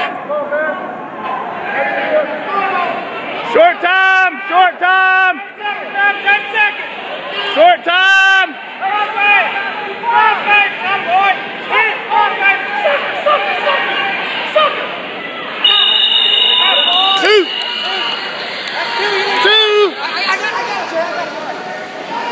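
Spectators shouting and yelling encouragement at a wrestling bout, with long drawn-out yells about four and eight seconds in. About sixteen seconds in, a scoreboard buzzer sounds a steady two-tone blare for about two seconds.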